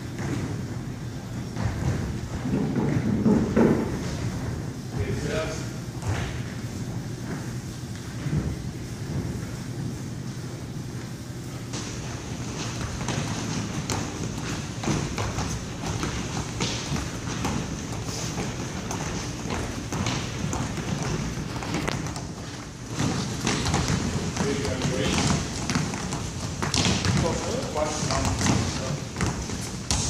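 An irregular run of thuds as several people's sneakered feet step up onto and down from a wooden gym bench, with voices in the background.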